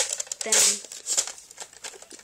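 Toys being handled on a carpet: rustling and a run of small sharp clicks, with a short breathy vocal noise about half a second in.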